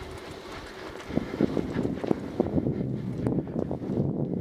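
Mountain bike riding fast over a dirt trail: tyres rumbling on the dirt and the bike rattling, with many small knocks from bumps and roots. It grows louder about a second in.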